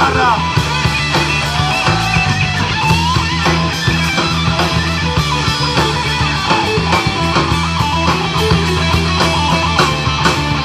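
Live rock band playing loudly: an electric guitar lead with bent, wavering notes over a steady drum beat with cymbals.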